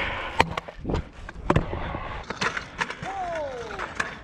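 Scooter wheels rolling fast over concrete skatepark ramps, with a few sharp clacks of the scooter hitting the concrete in the first two seconds. A voice calls out once with a falling pitch near the end.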